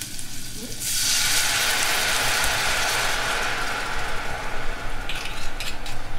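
White wine (Riesling) poured into a hot pot of onions sweating in butter, setting off a loud sizzling hiss about a second in that carries on as the pan deglazes. A few sharp clicks near the end.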